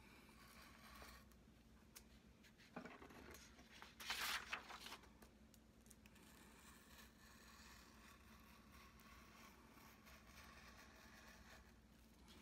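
Faint scratching of a hobby knife blade cutting through printer paper on a cutting mat, with a louder scratchy stretch about four seconds in.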